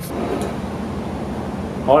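Steady ventilation rush with a low hum running under it, the air-handling and machinery drone heard in a ship's interior corridor.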